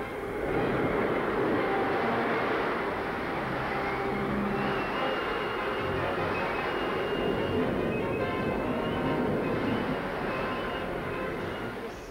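Storm sound effect: a steady roar of wind and heavy rain, swelling up about half a second in and easing slightly near the end.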